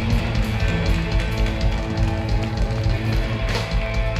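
Live Southern rock band playing loud, with electric guitars, bass and drum kit. About three and a half seconds in there is a crash, and a chord rings on after it.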